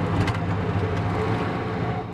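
Vehicle engine running steadily with road noise, heard from inside the cab while driving.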